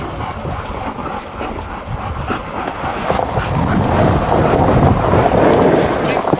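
Husky team pulling a wheeled rig along a gravel track: wheels rolling and rattling over gravel, with wind on the microphone and no barking, getting a little louder about halfway through.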